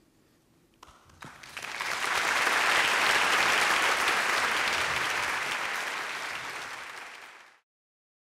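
Audience applauding: a few single claps about a second in, swelling quickly into full applause, then slowly fading until it is cut off abruptly shortly before the end.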